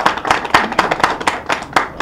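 A group of people clapping: dense, irregular claps that begin under the last spoken words and die away as speech resumes near the end.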